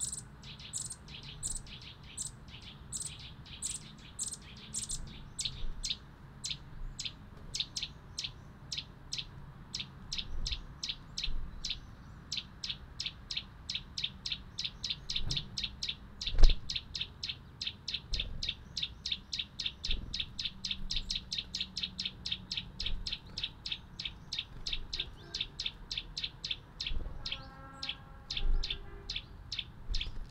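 A small songbird calling a long, steady run of short high chirps, about two a second at first and quickening to four or five a second through the middle. A single sharp tap stands out about sixteen seconds in.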